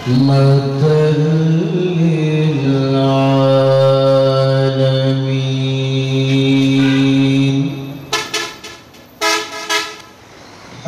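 A man chanting in a slow, drawn-out sung line, holding one long low note for about five seconds. A few short sharp sounds follow near the end.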